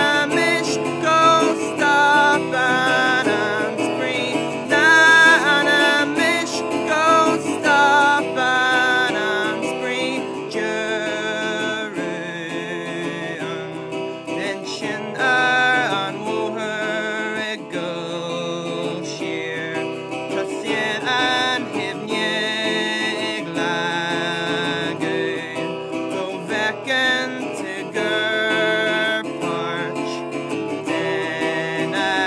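A solo acoustic guitar strummed, with a male voice singing in Irish over it.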